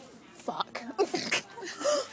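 A voice making a few short, sneeze-like noises, the loudest near the end.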